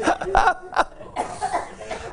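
A person laughing in three short bursts, then a breathy exhale.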